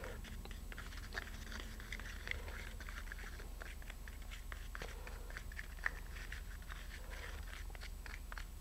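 Thinned carpenter's wood filler being stirred in a small cup: faint, irregular little clicks and scrapes of the tool against the cup, over a low steady hum.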